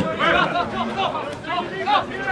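Spectators talking over one another close to the microphone, with a single sharp knock at the very start.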